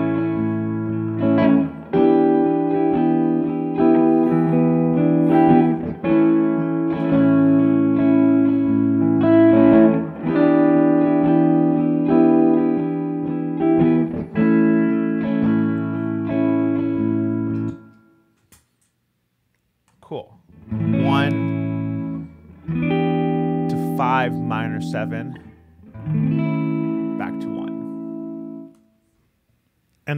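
Electric guitar playing Mixolydian lines over a looped chord part: sustained chords with single notes on top. It stops about 18 seconds in, then after a short pause plays again for about nine seconds with bent, vibrato notes, and stops shortly before the end.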